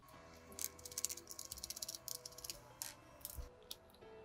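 Plastic casing of a Sonoff 4CH Pro R2 smart switch being handled as its outer cover is taken off: a run of faint, light clicks and rattles. Quiet background music plays under it.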